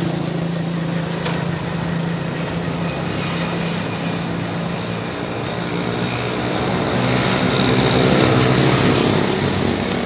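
A motor engine running continuously with a steady low hum, growing louder between about seven and nine seconds in.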